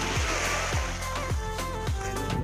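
Background music with a steady beat: a deep drum that drops in pitch on each hit, a little under twice a second, under sustained synth-like notes.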